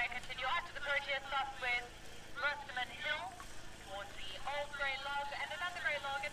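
Faint, thin-sounding speech in the background, quieter than the close commentary around it.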